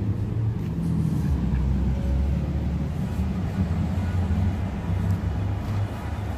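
City street traffic, cars driving past with a steady low rumble.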